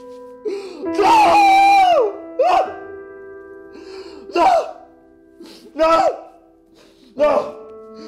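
A person wailing in anguish: one long high-pitched cry that falls away at its end, then a string of shorter sobbing cries about every second and a half. Sustained keyboard music plays beneath them.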